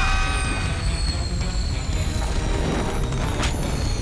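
Animated sound effect of a car boosted to extreme speed by a reactor: a loud, steady low rumble with high whining tones that slowly fall in pitch, and a brief sharp crack about three and a half seconds in.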